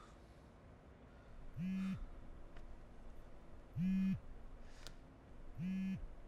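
A mobile phone vibrating on a hard surface: three short buzzes about two seconds apart, each starting with a quick rise in pitch and carrying a faint rattle.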